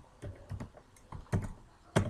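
Typing on a computer keyboard: several separate keystrokes clicking at an unhurried pace.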